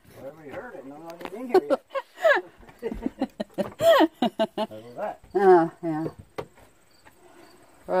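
Indistinct voices talking, dropping away for about the last second, over a faint, steady high chirring of insects.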